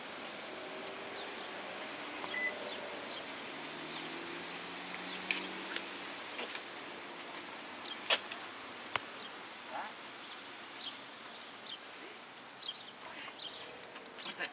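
Parking-lot background noise with a vehicle's engine running nearby, its pitch rising slowly partway through. A few sharp clicks and knocks come a little past the middle.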